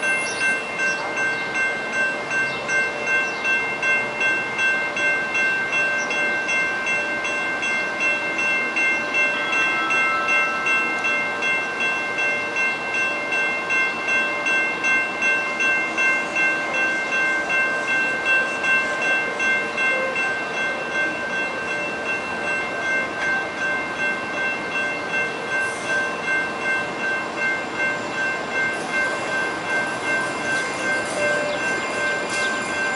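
Railroad grade-crossing warning bell ringing steadily, about two rings a second. The gates are down for an approaching light-rail train.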